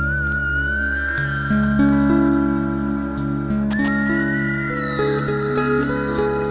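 Slow, meditative harp music. Long held low notes sound under a high, sliding tone that enters at the start and comes in again about four seconds in.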